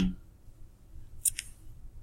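A pause in a quiet room, broken about a second and a quarter in by a brief, crisp double click.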